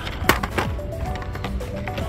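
Quiet background music with steady held tones, and a few sharp clicks and clacks about a third of a second in: Hot Wheels blister cards knocking against the metal peg hooks as they are flipped through.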